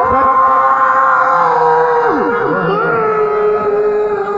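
Sufi devotional singing: a voice holding one long high note, with other voices sliding down briefly about two seconds in.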